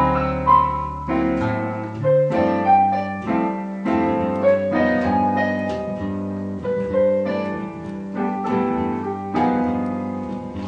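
Digital piano playing a slow piece: a melody of single notes struck about once or twice a second over held chords.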